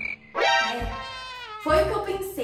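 A long pitched sound, lasting about a second and sliding slightly down in pitch, over background music, followed by a shorter, louder sound near the end.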